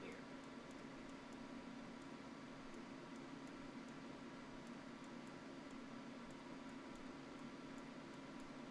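Quiet, steady low hum and hiss of a desktop recording setup, with faint, sharp computer-mouse clicks every second or so as vertices are picked and dragged.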